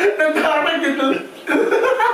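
A group talking and chuckling, with a short lull about halfway through.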